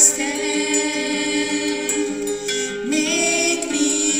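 A hymn sung by several voices, in long held notes with a rise in pitch near the end.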